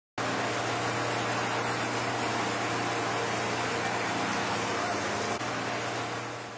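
A motorboat under way: a steady low engine drone under the loud rush of its churning wake and the wind.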